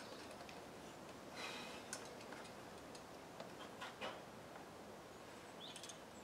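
Quiet outdoor ambience with a few faint, scattered clicks and a brief soft hiss about one and a half seconds in.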